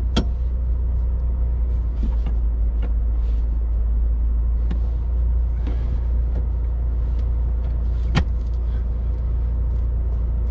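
Four-cylinder MK5 Toyota Supra's 2.0-litre turbo engine idling, heard from inside the cabin as a steady low hum. A few sharp clicks fall over it, the loudest about eight seconds in.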